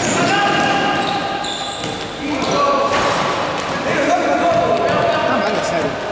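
Indoor basketball game: sneakers squeaking on the court floor and a ball being dribbled, with players' voices, echoing in a large gym.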